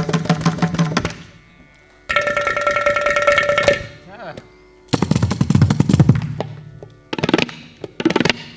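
A Carnatic percussion ensemble of mrudangam, ghatam and tabla trading short rhythmic phrases. Each phrase is a second or two of rapid strokes, with brief pauses between them. One phrase carries a ringing pitched tone, and another has deep bass strokes.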